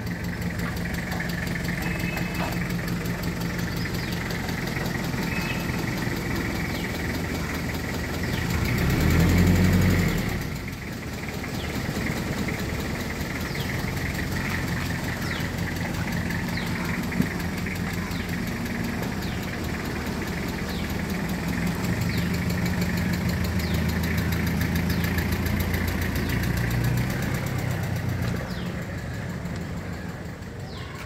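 Toyota Qualis engine running at low speed as the vehicle is manoeuvred, swelling louder about nine seconds in, then louder again before fading near the end as it pulls away.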